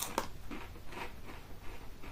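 A person biting into and chewing a ridged potato crisp, a run of short, uneven crunches, the sharpest near the start.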